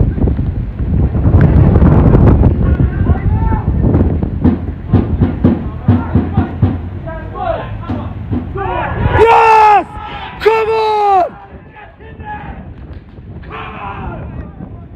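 Players and spectators shouting during open play over a heavy low rumble; about nine seconds in, as a shot goes in on goal, two long, loud cries fall in pitch one after the other.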